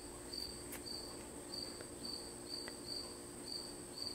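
Faint cricket chirping: short high chirps repeating two or three times a second over a steady high-pitched whine, with a few small faint ticks.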